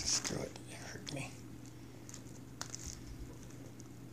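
A cat eating dry kibble: a few short, soft voice-like sounds in the first second and a half, then scattered faint clicks of chewing and kibble on the envelope.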